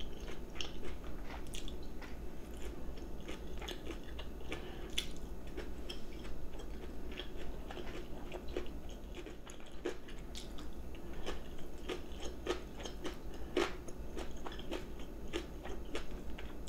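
A person chewing food while eating a meal, with many irregular soft clicks and small crunches. A low steady hum runs underneath.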